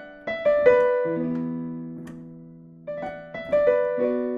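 Digital piano playing slowly: three quick single melody notes, then a low chord struck and left to ring and fade. A second run of melody notes starts near the end, landing on another chord.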